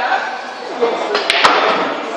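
Two sharp clicks of pool balls striking, a split second apart, about 1.3 s in, over background voices.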